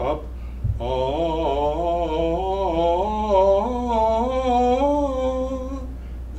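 A man's voice singing a wordless vocal warm-up sequence with skips: short groups of held notes that leap over the middle note, each group starting a little higher.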